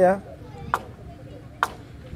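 A long-handled hewing tool's blade chopping into a wooden log: two sharp chopping knocks about a second apart as chips are hewn from the pole.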